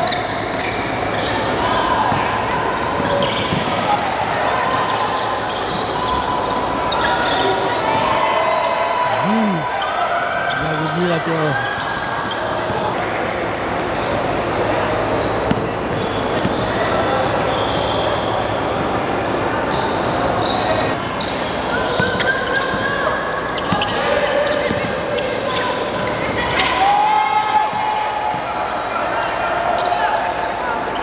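Live game sound of indoor basketball: a ball bouncing on a hardwood court, with players and people courtside calling out, echoing in a large hall.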